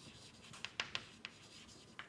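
Chalk writing on a blackboard: a string of short, faint taps and scratches as the chalk strokes out words.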